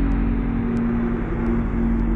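Cinematic sound-design drone for an animated logo: a deep, steady rumble under a held low hum and a wash of airy noise.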